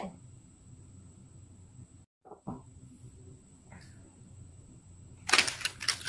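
Quiet room tone with a faint steady high whine, broken about two seconds in by a brief dead-silent gap where the recording was stopped and restarted. A couple of soft clicks follow the gap, and near the end there is a short cluster of handling noises.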